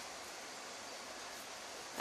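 Faint steady hiss with no distinct events: background noise only.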